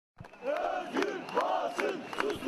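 Crowd of protesters chanting a slogan in unison, many voices shouting together in a rhythmic chant with a beat about every half second, starting a moment in.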